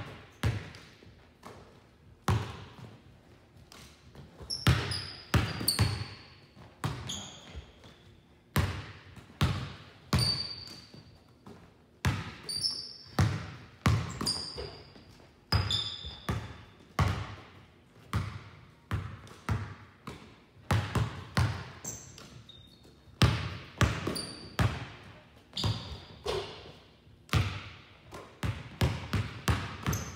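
Basketballs bouncing on a hardwood gym floor in uneven runs of dribbles, each bounce followed by a short echo in the hall, with brief high sneaker squeaks between them.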